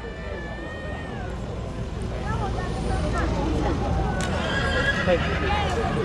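A draft horse whinnying amid the chatter of a crowd of onlookers.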